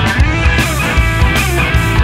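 Blues-rock band playing an instrumental passage: a guitar line with bent notes over bass and drums.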